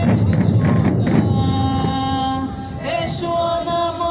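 Voices singing together over a loud drum ensemble. The drumming drops away about two and a half seconds in and the singing continues.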